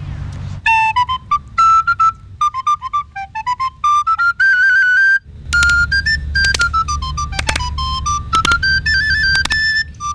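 A small end-blown flute played solo: a quick, wandering melody of short high notes darting up and down, with a brief break about five seconds in and a low rumble beneath the second half.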